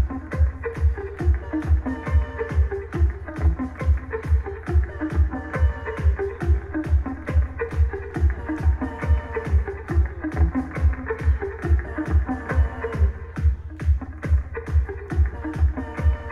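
Live electronic pop band playing, amplified through the club PA: a steady kick drum about two beats a second under guitar and synth lines.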